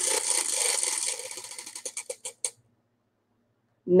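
Voilamart tabletop prize wheel spinning down: its ticker clatters rapidly over the rim pegs, then the clicks space out and slow until the wheel stops about two and a half seconds in.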